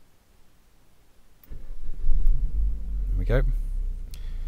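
1998 Renault Safrane 2.0's engine starting about one and a half seconds in, then running on steadily at idle.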